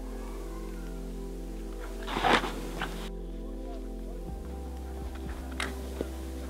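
Background music of sustained, held chords, with a short noisy burst about two seconds in and a smaller one near the end.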